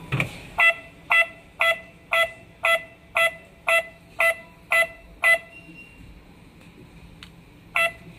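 Secrui MY7 wireless doorbell receiver beeping from its speaker in reset mode: ten short electronic beeps, about two a second, that stop after about five seconds, followed by a single beep near the end. The beeps stopping marks the reset, when all settings are cleared.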